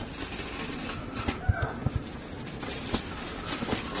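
Faint handling noise of fingers working on a smartphone display assembly on a tabletop: low rubbing with a few small clicks and taps.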